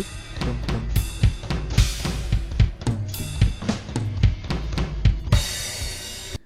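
Drum kit playing a fast gospel-style chops fill, played back at slowed speed: rapid strokes across kick, snare and toms over the band's sustained chords. Cymbal crashes ring out about two seconds in and again near the end.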